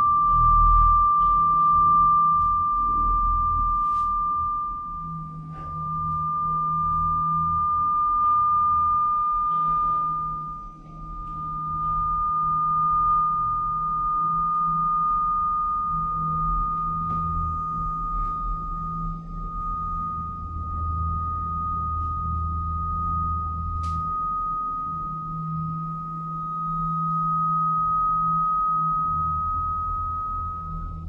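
A sustained pure tone, like a sine wave, holding one pitch and creeping slowly higher, over a low wavering drone, with a few faint clicks.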